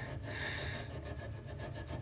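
Fine steel wool scrubbed back and forth over a tarnished brass piano pedal coated with Brasso, a faint repeated rasping, rubbing off the oxidation.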